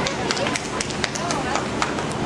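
Busy gymnastics-gym background: distant children's voices with irregular sharp knocks and slaps, several a second.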